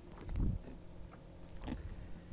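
A freshly caught jack being handled on a kayak: one low, short thump about half a second in, then a few faint clicks.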